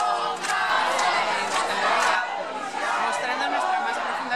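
A crowd of demonstrators shouting together, many voices overlapping.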